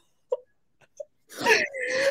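A woman's breathy laugh about one and a half seconds in, running into a drawn-out, whining voice, after a second of quiet broken by two faint short blips.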